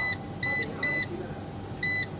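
SAKO Sunpolo solar inverter's control-panel beeper giving short, high key beeps as its arrow button steps through the setting menu: three in quick succession, a pause, then one more near the end.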